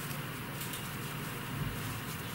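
Steady low hum and hiss, with a few faint clicks of circular knitting needles as stitches are worked.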